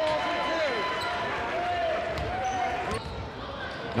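Game sound in a high school gym: steady crowd voices with a basketball being dribbled on the hardwood court.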